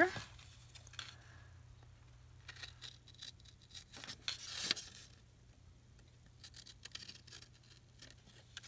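Small scissors cutting paper in a series of short, faint snips, the loudest just before the two-thirds mark.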